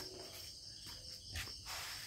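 Faint, steady high-pitched trilling of crickets in the background, with a brief soft rustle near the end.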